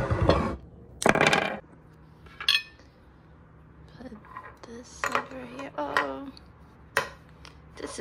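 Ceramic soup bowl and plates being set down and shifted on a wooden table: a loud knock about a second in, a short ringing clink a moment later, and a sharp tap near the end.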